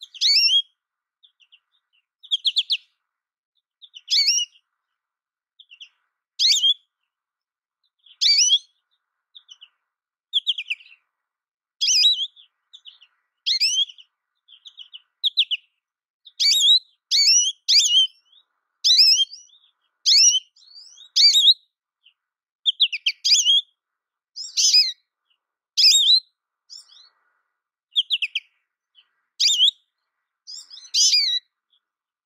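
American goldfinch calling: short, high twittering phrases of about half a second each, repeated every second or two and coming faster in the second half.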